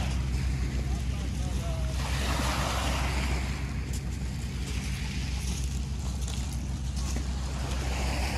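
Small Black Sea waves washing onto a pebble beach, one wash swelling about two seconds in and another near the end, over a steady low rumble of wind on the microphone.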